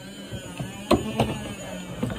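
Tableware being handled at a table: a fork in a paper noodle cup and a sauce bottle, giving two sharp clicks about a second in over a low steady hum.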